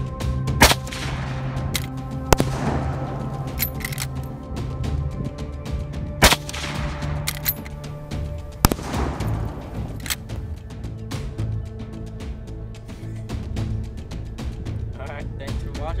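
Marlin .30-30 lever-action rifle fired several times in fairly quick succession, each sharp shot followed by a long echoing tail, over background music.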